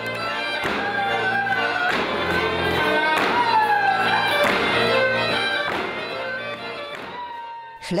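Folk music played for a stage dance: a melodic line that slides in pitch over a steady accompaniment, with a few thumps. The music fades out near the end.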